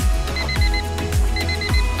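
Digital alarm clock beeping in groups of four quick, high beeps, two groups about a second apart, over background music with a steady bass beat.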